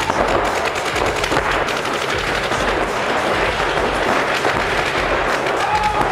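Paintball markers firing rapid, overlapping strings of shots.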